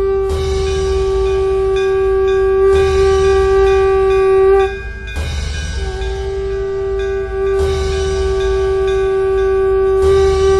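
A conch shell (shankha) blown in long held notes, one steady pitch with bright overtones. It breaks off near the five-second mark and sounds again about a second later, over a deep low rumble that swells at the start of each blast, as the opening of a devotional film soundtrack.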